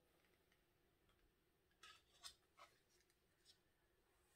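Near silence, with a few faint light clicks and scrapes about two seconds in and again near the end, from a wooden stir stick being worked in a paper cup of acrylic paint and set down.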